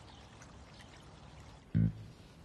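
A faint, even background hiss, then near the end background music comes in with a loud, deep plucked note.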